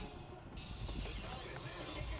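Steady hiss of air from a car's dashboard vents as the heater/air-conditioning blower fan runs, starting abruptly about half a second in, over a low engine rumble.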